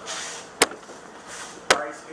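Two sharp knocks about a second apart, with some rustling between them.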